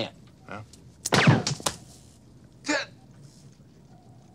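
A dart fired from a cufflink with a short sharp shot about a second in, followed at once by a man's falling cry as it hits him. A second short vocal sound comes near three seconds in.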